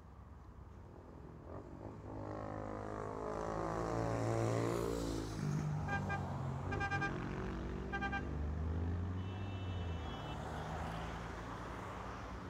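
Road traffic. A vehicle passes close by, its engine note falling in pitch as it goes. Then a car horn gives three short toots about a second apart, over the low rumble of running engines.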